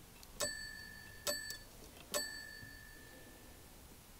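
Toy doorbell of a vintage Fisher-Price Play Family House dinging three times, each small metallic ding ringing on briefly and fading.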